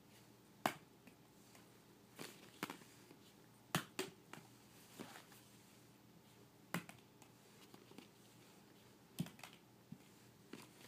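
Hollow plastic ball-pit balls clicking and tapping together as a baby handles them: a scattering of sharp, light knocks at uneven intervals, the loudest about half a second in.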